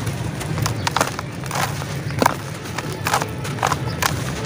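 A dry chunk of red dirt crumbling in the hands, with irregular crunching and crackling clicks as pieces break off and fall into a plastic tub of loose soil, over a steady low hum.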